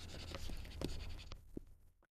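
A stylus writing by hand on a tablet: a faint run of short scratchy strokes that cuts off abruptly near the end.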